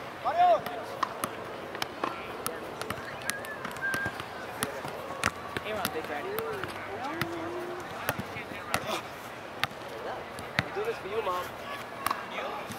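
A soccer ball juggled off foot, knee and head: a string of short taps, roughly one every half second and not evenly spaced. Players' voices call out now and then.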